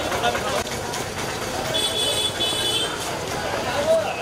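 Busy street noise with crowd voices, and a vehicle horn honking twice in short high-pitched blasts about two seconds in.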